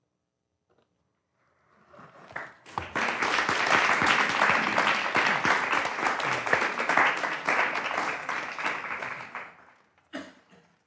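Audience applauding at the end of a staged reading. The clapping begins about two seconds in, builds quickly, holds steady and dies away near the end.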